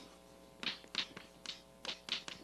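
Chalk writing on a blackboard: a quick series of short taps and scratches, about five strokes, as letters are written.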